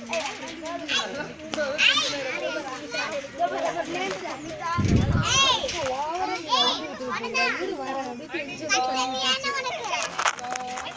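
Many children's voices chattering and shouting at once, overlapping, with high calls that rise and fall in pitch. A brief low thump about five seconds in.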